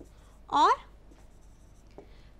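Faint, scratchy strokes of a stylus writing on a touchscreen display.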